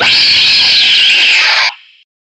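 A loud, high-pitched, creature-like screech sound effect, lasting about a second and a half and cutting off suddenly, with a short faint tail.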